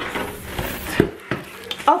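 Plastic wrapping and tissue paper rustling as hands dig into a cardboard box, with a sharp knock about a second in.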